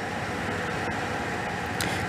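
Steady outdoor background noise of distant engines running, from heavy machinery such as excavators clearing flood debris.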